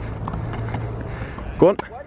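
A tennis racket strikes a ball once near the end, a single sharp crack, over a steady low rumble.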